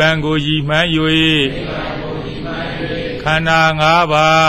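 A man chanting a Buddhist recitation in a level, near-monotone voice. There are two held phrases, the first in the opening second and a half and the second starting a little after three seconds in, with a pause between.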